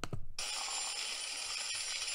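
Confetti fountain sound effect from the Windows 10 Photos app's 3D effects playing back: a click, then about a third of a second in a steady, bright hissing shimmer that keeps on.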